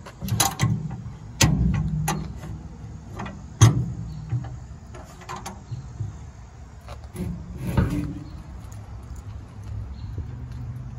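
Latch and steel side door of a dump body being worked open by hand: a series of metallic clicks and clunks, the sharpest about three and a half seconds in and another near eight seconds.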